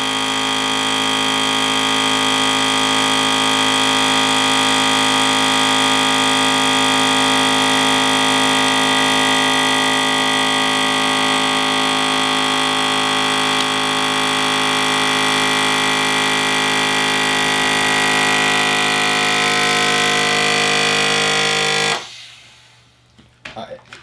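Countertop vacuum sealer's pump running with a loud, steady hum as it sucks the air out of a plastic bag around a filament spool, then cutting off suddenly near the end once the bag is evacuated, followed by a few light clicks.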